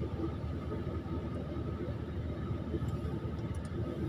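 Kobelco hydraulic excavator's diesel engine running steadily, heard close up from the machine, with a faint steady whine above the low engine sound.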